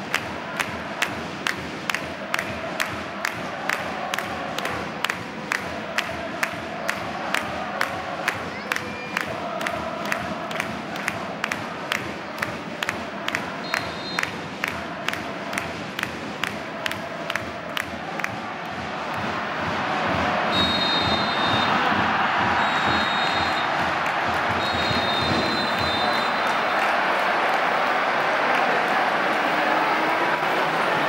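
Football stadium supporters chanting to rhythmic beats about twice a second. About two-thirds of the way in the crowd noise swells, and the referee's whistle sounds three blasts: the final whistle ending the match.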